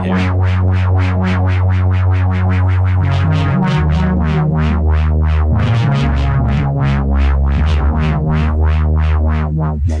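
Shaper iOS software synthesizer playing held low notes mixed with noise, pulsing rhythmically about four times a second under LFO modulation. The bass note changes a few times, about three and a half, five and a half and seven seconds in.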